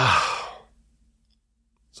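A man's heavy sigh: a breathy exhale with a falling voiced start, lasting a little over half a second.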